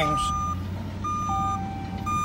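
Two truck reversing alarms beeping at different pitches, the higher one sounding about once a second in half-second beeps, over a steady low engine hum.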